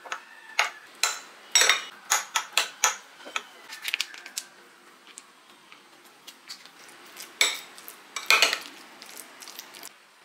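Metal fork clinking and scraping against a glass bowl as it mashes boiled eggs, in quick irregular taps: a dense run in the first three seconds, a few near four seconds, and a louder cluster near the end.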